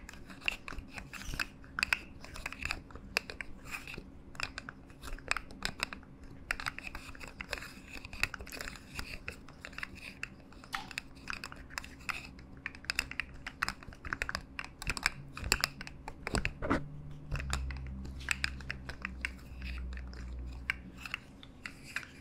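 Segmented plastic slug fidget toy being bent and twisted close to the microphones, its jointed segments making rapid, irregular small clicks and crackles. A low steady hum joins in for a few seconds near the end.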